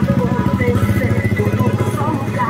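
A small motorcycle engine running as it rides up close, a rapid even puttering. A wavering singing voice with music plays over it.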